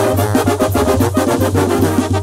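Brass band music with a steady beat and a repeating low bass line, the kind of banda music that accompanies a jaripeo bull ride.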